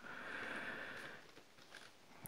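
Faint rustle of clear plastic packaging being handled, lasting about a second and then dying away.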